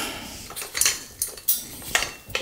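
Light metallic clicks and clinks as a ceiling fan's cotter pin is worked out of its metal downrod: about five small sharp ticks, the loudest about one and a half seconds in.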